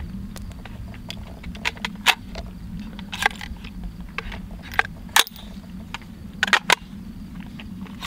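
Irregular metallic clicks and clacks of a Smith & Wesson M&P 15-22 pistol being handled to clear a malfunction, as its action is worked by hand. The louder clacks come about two and five seconds in, with a quick cluster near the end.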